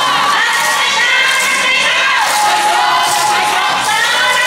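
A group of yosakoi dancers shouting calls together over yosakoi dance music, many voices at once.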